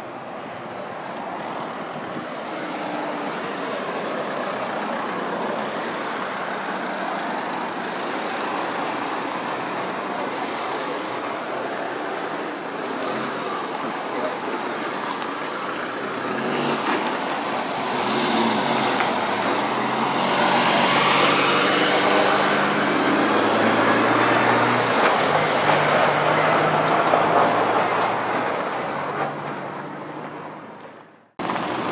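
Road traffic noise, with a heavy vehicle's engine running close by in the second half, growing louder, its low hum shifting in pitch.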